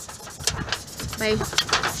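Wind noise buffeting the microphone, with a few faint scratches of a felt-tip marker writing on an aluminium foil lid.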